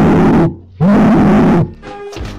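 Two loud, distorted yells, each a little under a second long with the pitch rising and then falling, the second starting about a second in.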